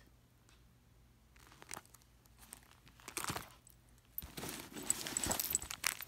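Hand rummaging in a handbag: light rustling, then denser plastic crinkling from about four seconds in as a plastic-wrapped pack of pocket tissues is pulled out.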